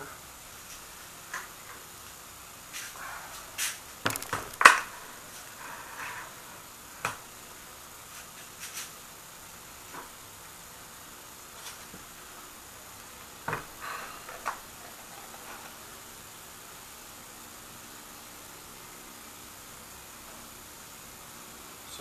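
Scattered knocks and clunks of handling as a bucket of water is set down and a plastic cell container is lowered into it, with quiet room tone between. The loudest knock comes about five seconds in, and the last few seconds hold only room tone.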